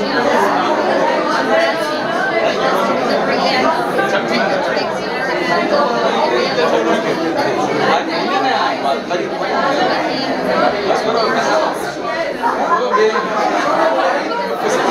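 A woman talking to reporters at close range, over the chatter of a crowd in a large hall.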